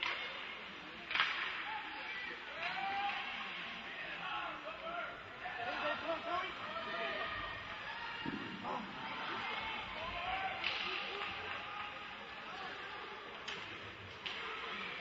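Ice hockey game in play: skates scraping the ice and players and spectators calling out, with sharp cracks of stick, puck or boards about a second in, near the last third, and again near the end.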